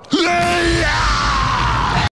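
Cartoon flamethrower blast, a loud rushing noise with a deep rumble beneath it, under a long yell that holds its pitch and then slides downward, with music behind.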